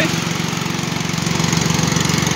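Husqvarna riding lawn mower's engine running steadily, a fast even beat with no change in speed.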